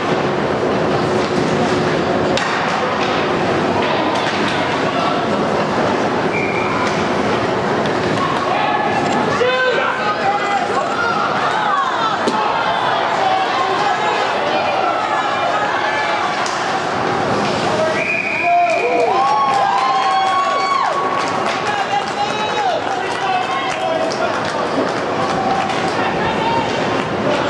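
Echoing indoor ice rink during a hockey game: a steady wash of spectators' and players' voices with shouts rising about ten seconds in and again a little before twenty seconds, over scattered knocks of sticks and puck against ice and boards.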